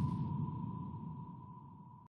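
Tail of a fiery logo-reveal sound effect fading out: a low rumble dies away under one steady ringing tone.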